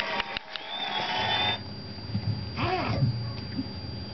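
Television sound that cuts off about a second and a half in, then a nursing Lhasa Apso puppy gives one short whimper that rises and falls in pitch, about three seconds in.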